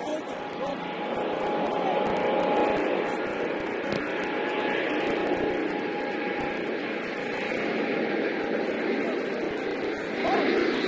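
Steady outdoor noise with indistinct distant voices of players, rising a little in the first couple of seconds and then holding.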